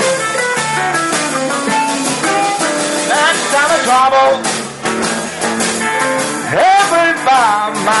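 Live blues band playing between sung lines: an electric guitar plays bending lead fills over bass and drums, with a long upward bend past the middle, and the singer comes back in right at the end.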